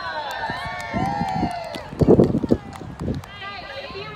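Indistinct voices of several people talking at a distance, overlapping, with no clear words. About two seconds in there is a short cluster of low rumbling thumps, the loudest sound here.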